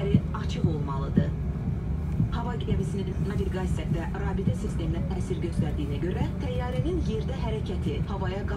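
Steady low hum inside the cabin of a parked Airbus A340-500, with people's voices talking over it throughout.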